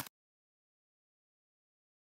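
Silence: the sound track is blank, after one brief click at the very start.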